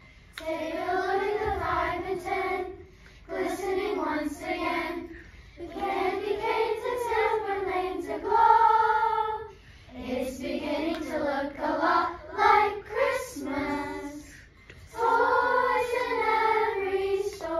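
Children's choir singing together, in phrases of a few seconds with short breaks between them.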